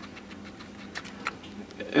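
A few faint, irregular light clicks and taps, handling noise at close range, over a faint steady low hum.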